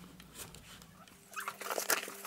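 Crinkling and rustling of a cardboard oats box and its packaging being handled, a quick run of clicks and rustles starting about a second in and loudest near the end, over a steady low electrical hum.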